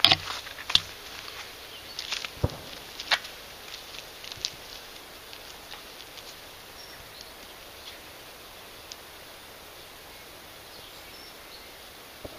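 Steady outdoor background hiss, with a few sharp clicks and one soft knock in the first four and a half seconds.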